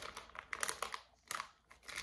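Clear plastic bag crinkling in the hands, a handful of short crackles with brief pauses between.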